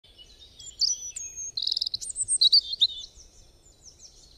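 Songbird singing: a quick run of varied chirps and whistled notes with a rapid trill near the middle, dying away in the last second.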